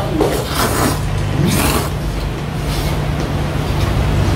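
A man slurping noodles from a bowl of seafood jjamppong: about three short slurps over a steady low hum.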